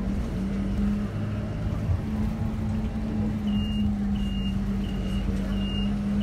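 Steady engine drone of a moving vehicle heard from inside its cabin. From about halfway through, a high electronic beep repeats roughly every 0.7 seconds.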